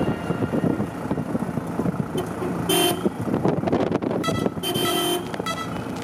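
A vehicle horn sounds twice over road noise: a short toot about three seconds in and a longer one about a second and a half later.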